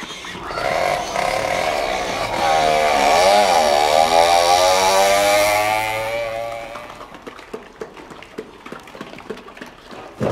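An engine-like drone with many overtones swells up. Its pitch dips and rises again about three seconds in, and it fades away after about seven seconds, leaving scattered clicks.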